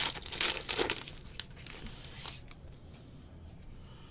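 Foil trading-card pack wrapper crinkling and cards rustling as they are handled, loudest in the first second, then fainter rustles with a couple of light clicks.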